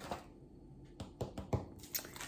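A quick run of light taps and clicks from hands handling things on a tabletop, starting about a second in.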